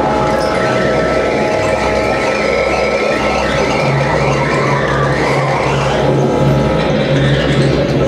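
Experimental electronic music from a laptop ensemble, played live through loudspeakers: a dense, noisy texture with held tones, a wavering high whine and a throbbing low bass that comes and goes.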